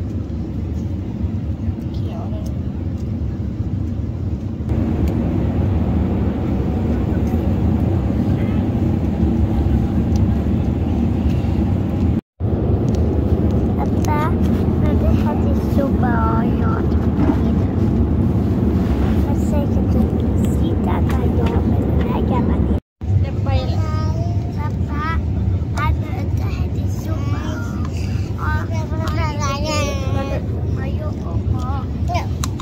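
Steady low rumble of an airliner cabin in flight, the constant engine and air noise heard from a passenger seat. It drops out twice, briefly.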